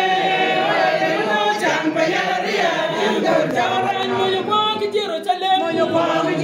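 A congregation singing together without instruments, a woman's voice among the many voices.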